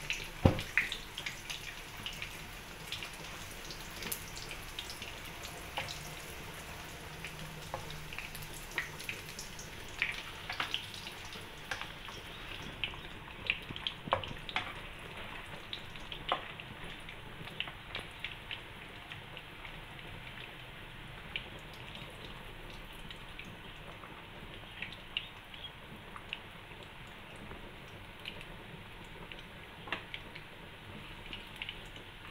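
Squid balls frying in shallow oil in a nonstick wok: scattered pops and crackles over a steady low hiss, with one sharp click about half a second in.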